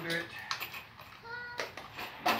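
Brief voice sounds with a couple of sharp clicks and a short high pitched note in between.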